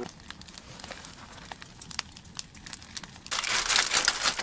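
Aluminium foil being handled: a few scattered light clicks, then from about three seconds in a loud, dense crinkling as the foil around the cooked trout is moved.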